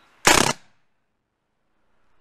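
Tippmann 98 Custom mechanical-blowback paintball marker, modified for full auto, firing on straight CO2 with no paintballs loaded: one short, loud blast of gas about a quarter second in, lasting about a third of a second.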